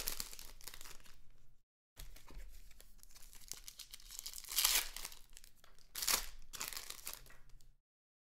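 Trading-card pack wrappers being torn open and crinkled, with cards shuffled between the hands. There are two louder rips, about four and a half and six seconds in, and the sound cuts out to silence briefly twice.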